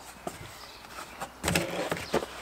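Cardboard carton being handled: a few light taps and rustles as it is lifted out of a larger cardboard box, then a louder brief scrape of cardboard on cardboard about one and a half seconds in as it is set down.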